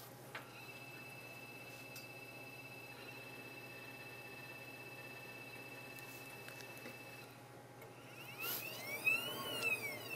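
Warner-Bratzler shear test machine running its test stroke, its drive giving a faint, steady high whine while the blade shears a cooked pork core, stopping about seven seconds in. Near the end come a few faint sounds whose pitch rises and falls.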